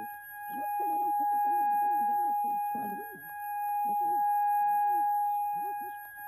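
Cartoon ear-ringing sound effect after loud heavy metal: a steady high-pitched tone rings on, with a muffled, garbled voice underneath that swells and fades twice.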